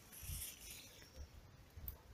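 Faint rustling with a few soft low bumps, typical of a hand-held phone being moved about outdoors.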